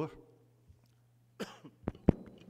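A man's short cough close to a microphone about one and a half seconds in, followed by a sharp click near the end.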